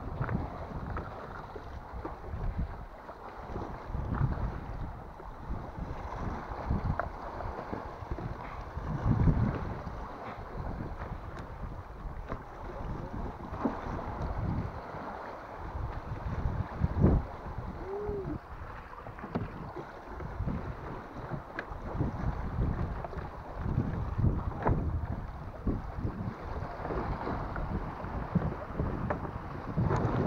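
Sea water lapping and slapping against the hull of a small drifting boat, in uneven swells, with wind buffeting the microphone and a few small knocks.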